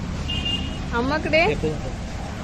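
A brief high-pitched voice sound with rising pitch about a second in, over a steady low background rumble.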